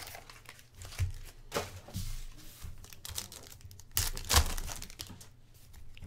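A foil trading-card pack wrapper crinkling and being torn open by hand, in several short rustling bursts, the loudest about four seconds in.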